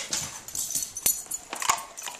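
Toy tea-set cups and plates clattering as they are handled, with two sharp clinks, one about halfway through and one near the end.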